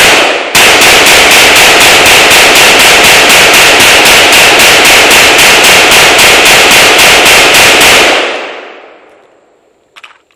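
AR-15 rifle fired semi-automatic in rapid succession: one shot, a short pause, then some thirty shots at about four a second, loud enough to overload the recording. The shooting stops about eight seconds in and the echo dies away.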